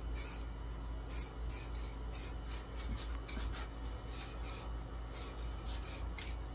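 Aerosol spray-paint can hissing in short, quick passes, about two a second, over a steady low hum.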